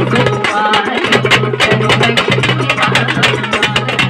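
A thappattam ensemble of parai frame drums, struck with sticks, and a large barrel drum playing a fast, dense rhythm together. A steady low note sounds on and off beneath the drumming.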